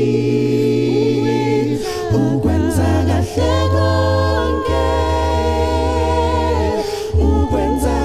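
Six-voice a cappella group singing in close harmony into microphones, unaccompanied, with a low bass part under held chords that change every second or two.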